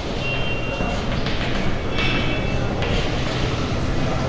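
Chalk scratching and tapping on a blackboard as a diagram is drawn, with a couple of short high squeaks, over a steady low background rumble.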